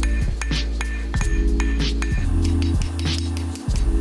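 Background music with a steady bass line over repeated hammer blows: a cross-peen hammer striking a hot steel billet on an anvil, each blow a short metallic strike.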